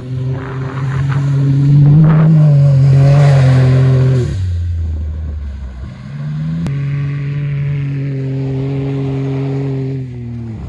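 Can-Am Maverick X3 side-by-side's turbocharged three-cylinder engine held at high revs as it spins its studded tires on the ice. The engine note drops a little past four seconds in as the throttle comes off, then climbs back up about six seconds in and holds steady.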